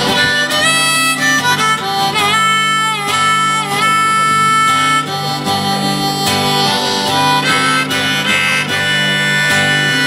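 Harmonica solo played from a neck rack, with several held notes that dip in pitch and come back up, over acoustic guitar accompaniment.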